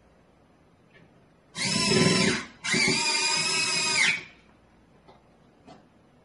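Cordless power drill-driver driving the two mounting screws of a door-sensor back plate into a door frame: two runs of the motor, the first about a second long and the second about a second and a half after a brief pause, the second dropping in pitch as it stops.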